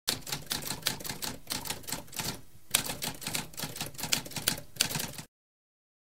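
Typewriter sound effect: a quick run of keystrokes clacking, with a short pause about two and a half seconds in, then stopping suddenly after about five seconds.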